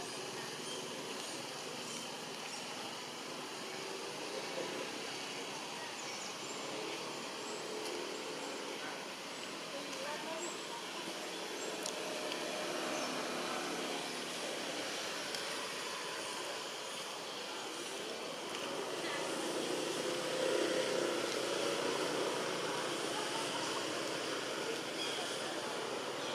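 Steady outdoor background noise with indistinct voices murmuring in the distance, growing a little louder near the end.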